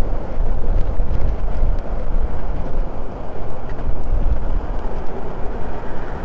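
Steady wind rumble on a helmet-mounted camera's microphone as a bicycle rides along a road, with traffic noise underneath.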